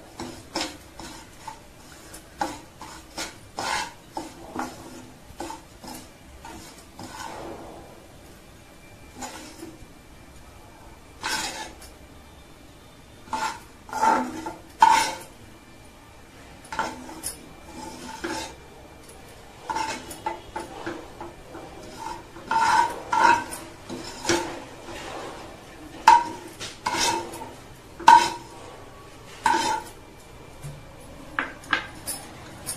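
Steel spoon scraping, tapping and clinking against a metal pan while stirring and scooping out dry-roasted semolina, in an irregular run of scrapes and knocks. The sharpest ringing knocks come about halfway through and over the last third.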